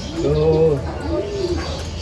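Racing pigeons cooing: low coos that rise and fall in pitch, one early and another about a second in.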